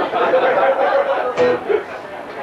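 Electric guitar holding a steady note on stage between songs, under talk and laughter from the band, with a sharp knock about a second and a half in.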